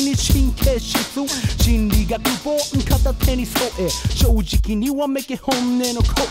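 Japanese hip hop track: a rapper's verse over a drum beat and bass.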